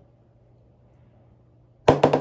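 A metal ball dropped into a clear plastic tub of water: one sharp, loud splash and knock near the end, with a brief ringing after it, as the ball sinks. Before it only a faint steady hum.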